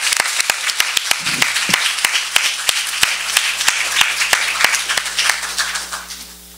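Audience applauding: many people clapping, with some single claps standing out sharply, fading away near the end.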